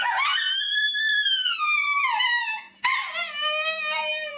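Husky-type dogs howling. A long, high howl rises and then slides down. After a brief break a second, lower and steadier howl begins.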